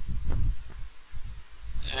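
Stylus drawing on a pen tablet, heard through the microphone as irregular low thumps and rumble.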